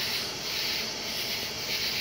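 A steady, even hiss of background noise.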